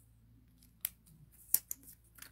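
Three short, sharp clicks, the loudest about one and a half seconds in.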